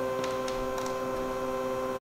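Steady machine hum made of several steady tones, with a few faint light ticks in the first second.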